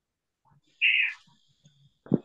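A single short, high-pitched chirp about a second in.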